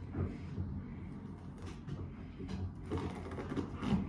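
Stretch pressure bandage being unwound from the upper arm, faint irregular crackling and rustling as its layers pull apart, a little louder near the end.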